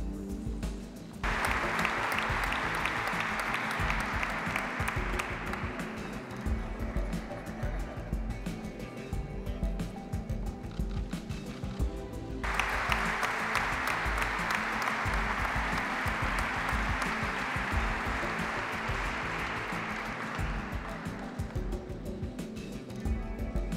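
Audience applause in two rounds over steady background music. The first round breaks out about a second in and dies away over several seconds; the second starts sharply near the middle and fades towards the end.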